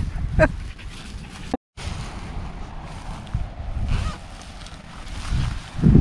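Wind rumbling and buffeting on the microphone outdoors, rising and falling, with a brief laugh just after the start and a soft thump near the end.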